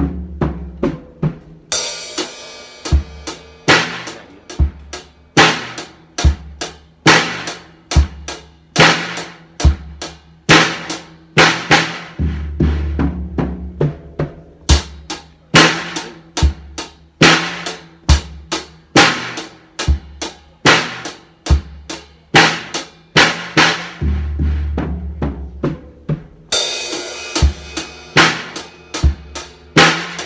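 Acoustic drum kit played in a steady beat of bass drum and snare, broken about every twelve seconds by an eighth-note fill down the snare and toms that lands back on the beat with a crash cymbal struck together with the bass drum.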